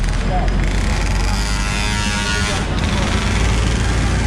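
Articulated city bus passing close by: a loud, steady motor drone with a deep hum underneath, the street noise that drowns out talk.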